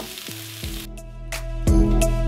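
Hash browns, onions and mushrooms sizzling in clarified butter on a hot Blackstone griddle for about the first second, then the sizzle cuts off and background music with a steady beat takes over.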